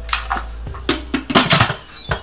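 Electric pressure cooker lid being set onto the pot: a series of knocks and clatters of the lid against the steel inner pot and housing, loudest about one and a half seconds in.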